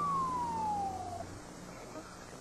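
Fire engine siren, one long wail falling in pitch that cuts off a little over a second in, with a low steady drone beneath it.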